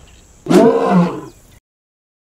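Male African lion giving one loud, short roar about half a second in.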